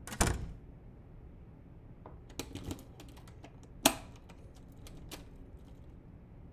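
A door closing with a thud, then a run of irregular clicks of keys on a computer keyboard, one sharper click standing out near the middle.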